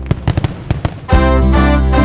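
Firework pops and crackles laid over background music: a quick run of sharp bangs in the first second, then the music swells to full volume about a second in.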